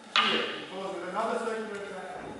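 A single sharp wooden clack of two jo staffs striking each other during a kumijo exchange, the loudest sound, followed by a man's voice.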